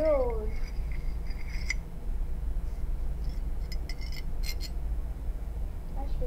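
Gift packaging being handled and shifted by hand: scattered light rustles and small clicks, bunched together in the middle, over a steady low hum.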